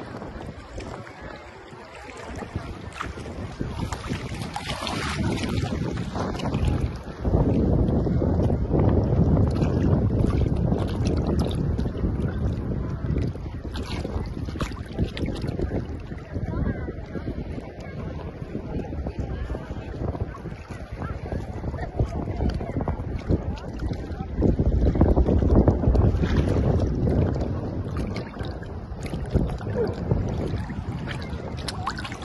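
Wind buffeting the microphone over water moving and splashing at the surface. It grows louder about seven seconds in and again near the end.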